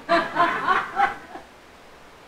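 Brief chuckling laughter, dying away after about a second and a half.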